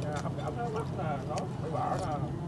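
Quiet background chatter over a steady low engine hum, with a few light clicks of spoons and chopsticks against bowls.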